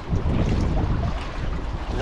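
Wind buffeting the microphone, an uneven low rumble, over lapping water.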